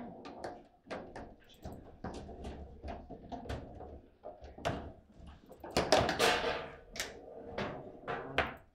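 Table football game in play: rapid clicks and knocks of the ball against the plastic players and the table, and rods sliding and striking, with a louder clatter about six seconds in.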